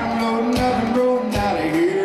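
Live country-rock band playing an instrumental break: drums, bass, piano, and electric, acoustic and steel guitars, with a lead melody that slides up and down in pitch over steady drum hits.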